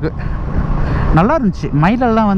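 Steady low rumble of a single-cylinder Royal Enfield Meteor 350 on the move, engine and wind noise on the microphone. A man's voice starts talking over it about a second in.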